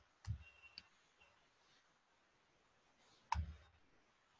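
Sparse clicks and light knocks from a computer input device while a diagram is drawn on screen. There is a soft knock and click shortly after the start, two faint ticks, then the loudest click, with a dull knock, just after three seconds in.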